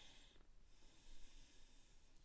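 Near silence: faint microphone hiss with a soft breath early on.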